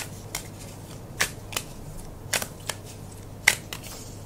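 A deck of tarot cards being shuffled and handled by hand: a run of about eight short, sharp card snaps and slaps at irregular intervals.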